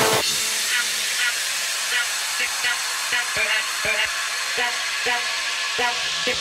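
Breakdown of a future house track: the bass and kick drum drop out, leaving a steady wash of white noise over short pitched synth plucks about twice a second that crowd closer together near the end.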